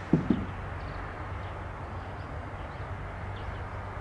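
Steady outdoor background rumble beside a railway line, with a sharp double knock just after the start and faint high chirps scattered through.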